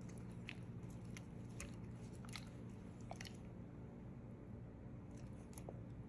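Silicone spatula stirring thick chocolate-and-cream ganache in a glass bowl to emulsify it: faint sticky squelches and small clicks of the spatula against the glass, coming irregularly and thinning out in the second half. A steady low hum runs underneath.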